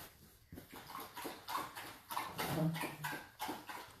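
Border collie scrabbling and digging at blankets on a couch: irregular rustles and scratches of paws and claws in fabric, with a short low hum about two and a half seconds in.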